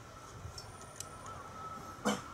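Faint trackside background noise: a steady low rumble with a faint steady high tone, and a single click about a second in.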